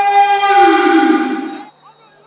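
A sports commentator's goal call, the scorer's name drawn out into one long held shout at a steady pitch, trailing off and ending about a second and a half in.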